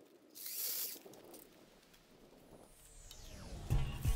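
Steel chain rattling and clinking as it is handled and pulled out, with a louder low thump near the end.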